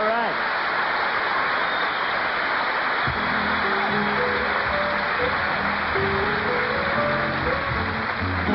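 A large audience applauding loudly after a song. About three seconds in, the band comes in underneath with low sustained notes and held chords.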